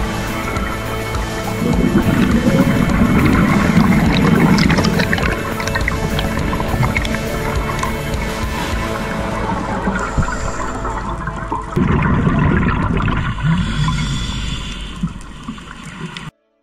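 Background music over underwater bubbling from a scuba diver's regulator, exhaled air rising in two long gurgling bursts, one early and one later on. The sound fades out near the end.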